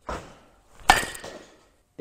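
Baseball bat hitting a ball off a batting tee about a second in: one sharp crack with a brief ringing after it, preceded by a softer noise at the start of the swing.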